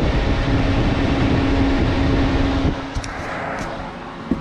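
Pop-up camper's propane furnace running with its burner lit: a steady rumble of blower and flame with a constant hum, loud up close, then quieter about three seconds in, with a couple of light clicks near the end.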